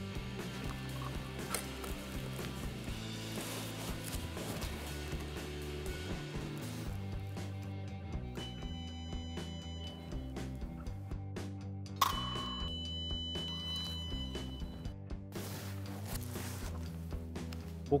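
Background music, with an electric fencing scoring machine's steady beep sounding twice: a shorter tone about eight seconds in, then a sharp onset and a louder tone held for about three seconds from twelve seconds in, each signalling a registered touch.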